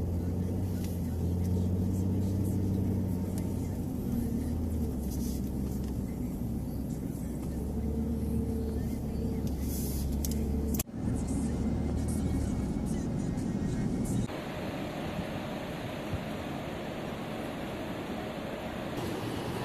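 Steady low rumble of a car's engine and tyres heard from inside the cabin while driving, with a brief break about eleven seconds in. Near the end it changes to a thinner, hissier outdoor background.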